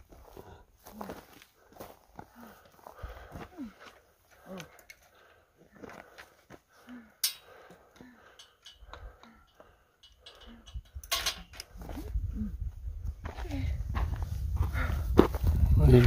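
Steel ranch gate being handled and swung shut, with scattered knocks, clinks and short creaks. There is a sharper metallic clank about seven seconds in and another about eleven seconds in. Footsteps on a dirt trail run underneath, and a low rumble of wind on the microphone builds toward the end.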